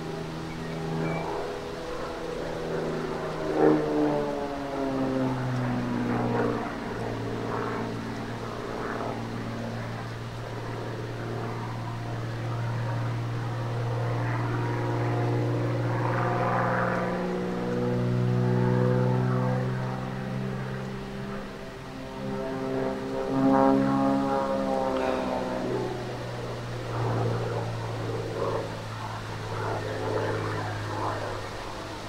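XtremeAir XA42 aerobatic monoplane's six-cylinder Lycoming piston engine and propeller droning through aerobatic manoeuvres, the note rising and falling again and again as the plane climbs, dives and turns.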